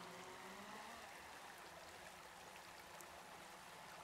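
Near silence: a faint, even hiss, with a faint low hum fading out over the first second or so.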